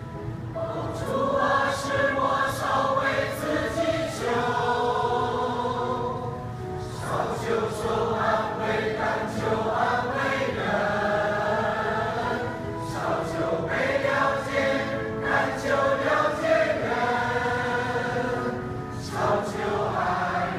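Mixed church choir of men and women singing an anthem together, in several long phrases with brief breaths between them.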